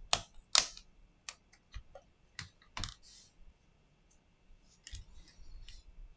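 Sharp clicks and taps of a small metal tool working at a tablet's display flex-cable connector to unclip it. There are seven or eight irregular clicks, and the two loudest come in the first second.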